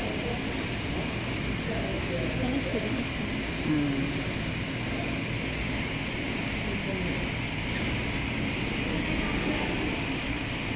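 Steady mechanical hum and noise, with faint voices in the background.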